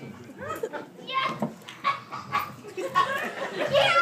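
Children's voices talking, unclear and overlapping.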